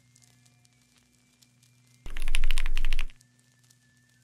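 A loud burst of rapid clicking, about ten clicks a second, starts about two seconds in and lasts about a second, over a faint steady hum.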